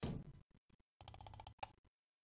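Faint handling noises at a computer desk: a knock right at the start, then about a second in a fast run of sharp clicks lasting about half a second, with a few single clicks between.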